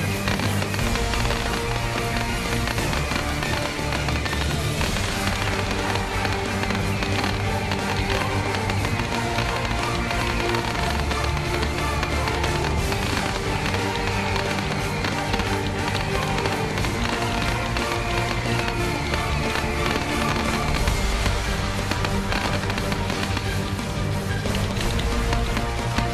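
Music playing steadily and loud as the soundtrack of a pyromusical fireworks display, with fireworks bursts and crackle throughout.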